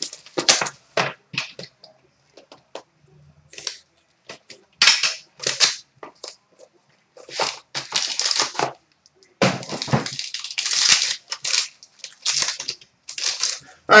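A 2013-14 Upper Deck Ultimate hockey card box being unwrapped and opened by hand: plastic wrap tearing and crinkling and the cardboard box scraping and rustling, in a string of short scratchy bursts with brief pauses between them.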